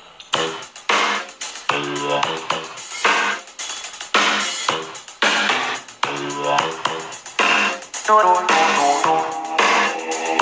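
Electronic intro music: a steady beat under held, pitched chord notes.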